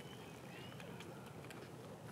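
Faint outdoor background: a low, steady hum with a few thin high chirps and several small clicks.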